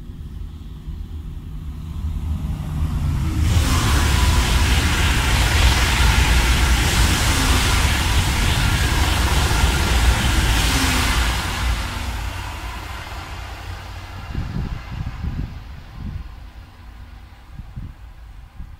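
TGV high-speed train passing at speed: its noise builds over a couple of seconds, stays loud for about eight seconds, then fades away.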